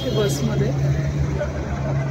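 City bus engine running with a steady low hum, heard from inside the passenger cabin, with voices over it.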